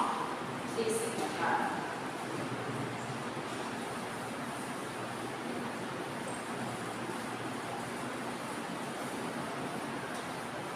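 Steady hiss of classroom background noise, with a couple of brief spoken sounds in the first two seconds.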